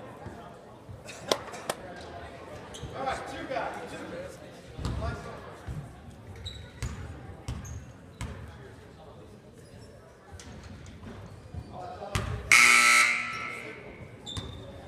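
Voices murmuring in an echoing gym, with a few sharp basketball bounces on the hardwood. Near the end a loud scoreboard horn sounds for about a second.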